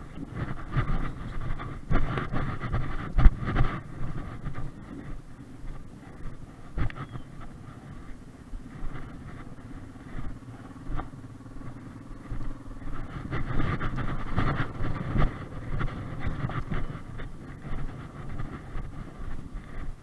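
Quad bike (ATV) engine running at low speed, with scattered knocks and rattles as it moves.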